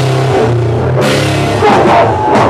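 Live heavy rock band playing loud: guitar, bass and drum kit, with a cymbal crash about halfway through.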